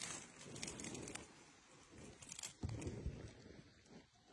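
Faint, irregular rustling and clicking from movement aboard a raft on still water, with a few low thumps about three seconds in.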